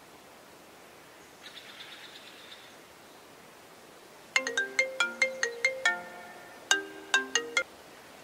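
Smartphone ringtone for an incoming call: a melody of short, quickly fading notes played in two phrases, cut off suddenly near the end as the call is taken or rejected.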